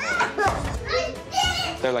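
Young children's high-pitched voices, laughing and shouting, with an adult starting to speak near the end.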